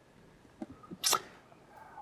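Quiet room tone broken by one short breathy sound from a person, like a sniff or quick breath, about a second in.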